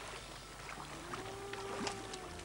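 Sea water splashing and washing as divers swim at the surface. A faint held tone that arches gently in pitch comes in about a second in.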